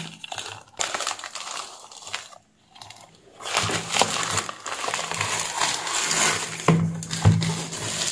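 Plastic courier mailer and plastic wrap being cut and torn open by hand: continuous crinkling and rustling with a few sharp clicks. It breaks off briefly about two and a half seconds in.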